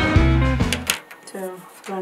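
Background music with held notes and a steady beat, cutting off abruptly about halfway through.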